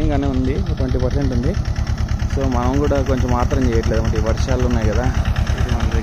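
An engine running steadily with a fast, even low beat, under a man's talk; most likely the engine driving the orchard sprayer.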